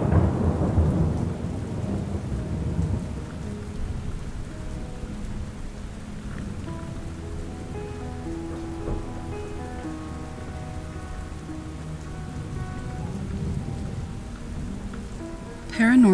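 Steady rain with a long roll of thunder that is loudest in the first couple of seconds, then slowly dies away under the rain.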